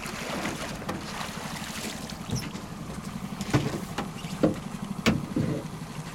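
A boat's motor idles steadily while a netted Chinook salmon is hauled aboard, with three sharp thumps in the second half as the net and fish land on the boat's metal deck.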